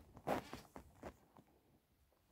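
Crocheted yarn blanket rustling and brushing against the microphone as it is handled: a louder scrape just after the start, then a few light scratches that die away in the second half.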